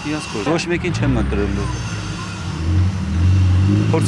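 Engine of a light box truck running as it drives slowly past close by: a low, steady engine note that grows louder about three seconds in. A man's voice is heard briefly at the start.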